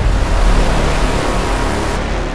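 Cinematic explosion sound effect for a logo intro: a loud, noisy rush with a deep bass rumble that slowly fades away.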